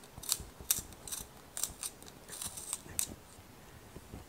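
A Caran d'Ache Luminance coloured pencil being twisted in a Jakar Trio hand-held pencil sharpener, the blade shaving the wood and core in a run of short, irregular scrapes.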